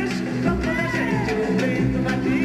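Live band playing a samba, with drum kit strokes keeping a steady beat under a gliding sung melody line.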